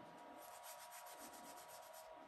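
Faint rubbing: a scrunched paper towel rubbed into a pressed eyeshadow pan to load it with powder, a run of quick strokes lasting about a second.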